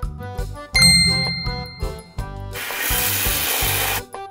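Children's background music with a steady beat. About a second in, a single bright ding rings out. From about halfway, a steady hiss carries on to the end.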